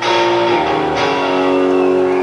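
Electric or acoustic guitar strumming chords live: one strum at the start and another about a second in, each left to ring, as the final chords of a song.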